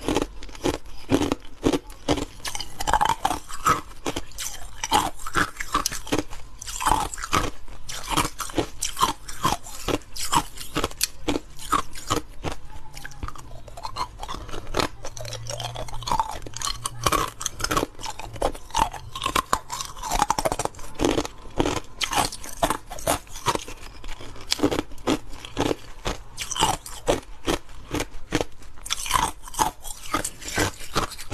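Ice cubes being bitten and chewed close to the microphone: a dense, continuous run of crisp crunches and cracks, several a second, as the ice breaks between the teeth.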